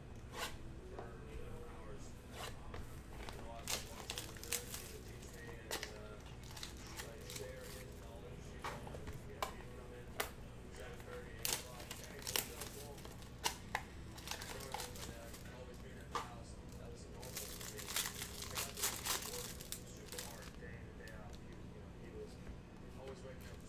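Trading card pack wrappers being torn open and crinkled by hand as the packs are unwrapped and the cards handled: scattered sharp crackles and rips, thickest in a cluster near the end.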